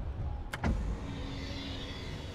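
Car's electric privacy partition being raised: a click about half a second in, then the steady whir of its motor.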